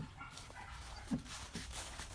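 Belgian Malinois puppy giving one short, low vocal sound a little past halfway while working the scent boxes, followed by rustling in the grass near the end.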